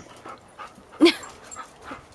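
Airedale terriers at play, with faint panting and scuffling sounds, and one short, loud vocal sound about a second in.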